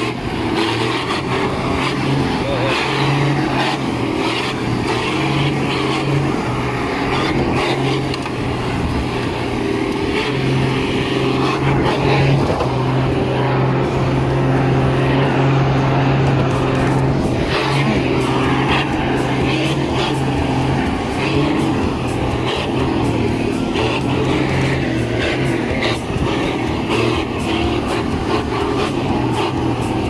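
Nissan Navara pickup engine pulling under load while towing a loaded truck on a rope, a steady drone that dips briefly a few times, mixed with rough noise from the moving vehicle on a dirt track.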